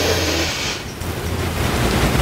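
A person taking a long, deep breath in: a soft rushing breath noise, strongest in the first second, over a low steady hum.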